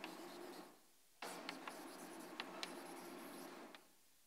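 Chalk writing on a blackboard, faint scratching strokes with a few sharp taps, in two stretches: a short one ending under a second in, then a longer one from about a second in until shortly before the end.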